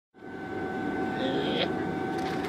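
Steady roar of a gas wok burner heating the wok, with a steady whistling tone running through it. It fades in just after the start, and a brief high tone sounds just past halfway.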